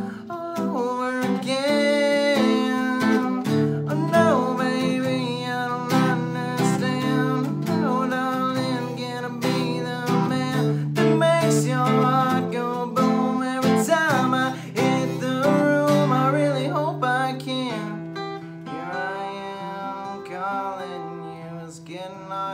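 Taylor acoustic guitar strummed with a capo, a steady chord accompaniment, with a man's voice singing over it. The playing eases off and grows quieter over the last few seconds.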